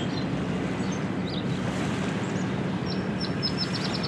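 Lakeshore ambience: a steady low rumble with a constant hum, with small birds chirping over it and a quick run of short high chirps near the end.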